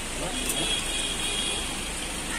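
Steady outdoor traffic and vehicle noise with faint voices in the background. A faint high-pitched steady tone sounds for about a second and a half in the middle, and there is a single small click about half a second in.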